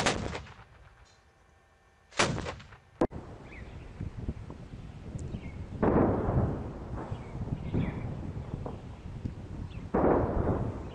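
Two heavy gunshots about two seconds apart, each echoing away. Then continuous rumbling of distant gunfire and explosions with scattered cracks, loudest from about six seconds in.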